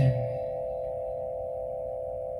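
Frosted quartz crystal singing bowl ringing on in a steady, even tone made of a few close pitches.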